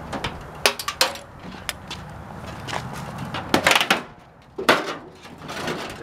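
Metal microwave oven chassis and parts clanking and rattling as it is handled and worked on, a run of sharp irregular knocks with the loudest cluster a little past halfway.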